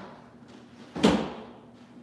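A training snowboard landing hard on an indoor box feature and mat: one sharp thud about a second in that dies away over about half a second.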